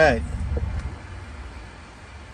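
Low, steady road and tyre rumble inside the cabin of a moving Waymo self-driving car, quietening over the first second or so, with the tail of a man's word at the very start.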